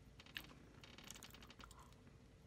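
Faint, crisp clicking from someone eating crunchy Fruity Pebbles cereal with milk. There is one sharp click about a third of a second in, then a quick run of small clicks about a second in.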